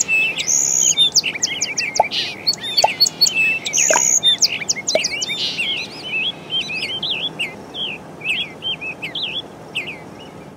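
A chorus of several songbirds chirping and twittering, many short rapid calls overlapping, growing a little sparser and quieter near the end.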